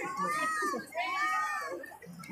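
Two high-pitched, drawn-out vocal calls from a person, each rising and then falling in pitch, the second starting about a second in.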